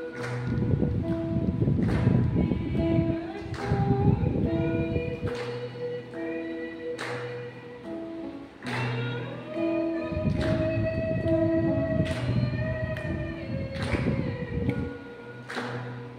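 A woman singing a Christian song over accompanying music with a regular beat. A low rumbling noise comes and goes under the music.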